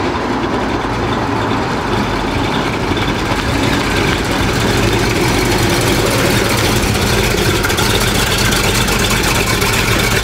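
Chevrolet El Camino's 454 big-block V8 running steadily while driving, with road noise. The engine is running rough ('väldigt bludrigt'), possibly because it is still cold; the buyer later puts it down to running rich, likely a stuck carburettor float.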